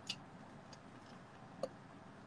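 A stainless steel tumbler clicking faintly as it is sipped from through a straw and lowered: a short click right at the start, a fainter one in the middle and another about a second and a half in.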